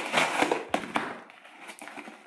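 Scissors slicing through packing tape on a cardboard box: a scratchy rasp with a few sharp clicks, loudest in the first second and then quieter.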